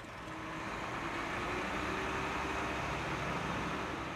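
Volvo concrete mixer truck's diesel engine running as it drives slowly up a street, a steady rumble that swells slightly in the first second and then holds.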